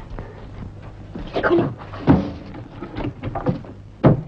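A heavy wooden chest being handled: a scrape about a second in, a solid knock just after two seconds, a few lighter knocks, and a loud knock of the lid at the end, over a steady low hum in the old soundtrack.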